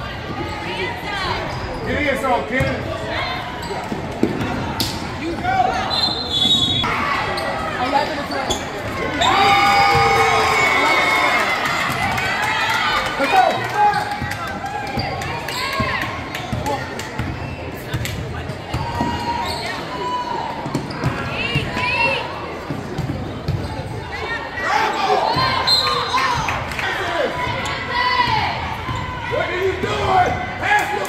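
Basketball bouncing on a gym's hardwood court during game play, with players' and spectators' voices and shouts echoing through the hall; the voices swell for a few seconds about nine seconds in.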